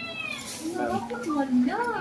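Indistinct high-pitched voices of women talking in the background, rising and falling in pitch. A steady high tone fades out in the first moment.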